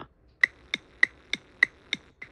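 A ticking-clock sound effect: short, sharp, even ticks, about three a second, starting about half a second in. It marks a time skip.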